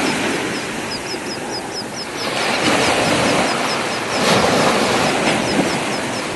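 Water rushing and churning past a moving boat, with engine noise under it, a steady loud rush. A rapid run of faint high chirps, about five a second, runs through it, pausing briefly about two seconds in.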